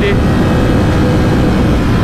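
Ducati Panigale V4S at highway cruising speed, about 100 km/h, its V4 engine running steadily under heavy wind rush on the rider's microphone.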